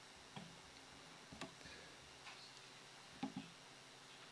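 Near silence with a few faint clicks, roughly a second apart, from a laptop being operated.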